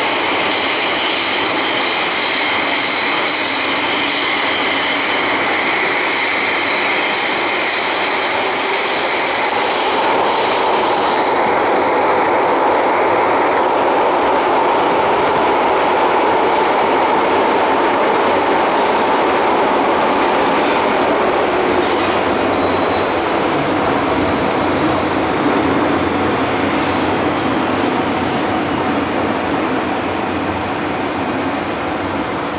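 Interior of an MTR Tseung Kwan O line subway car running through a tunnel: a steady, loud rumble of wheels on rail. Several high-pitched whines ride on it for about the first ten seconds, and a lower steady whine follows for the next ten or so.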